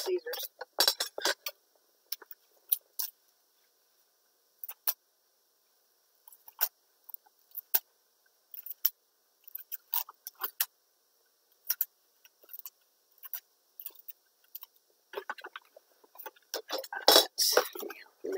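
Clear plastic cling wrap crinkling and crackling in short, scattered bursts with long quiet gaps between, as a fresh piece is pulled from its box and laid over a sheet of paper.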